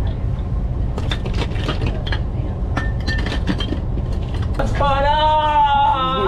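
Glass beer bottles clinking against each other and the ice in a cooler, in a few short clinks over a steady low rumble. Near the end a person's voice holds one long note.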